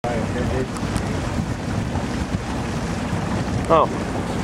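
Steady wind buffeting the microphone, with water noise from a boat out on open water.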